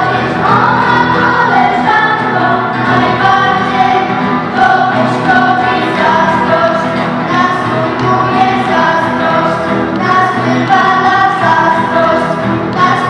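Girls' choir singing.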